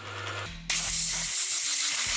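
Compressed-air blow gun hissing in a steady blast that starts suddenly about two-thirds of a second in, blowing drilling chips off a small brass piece held in a milling vise.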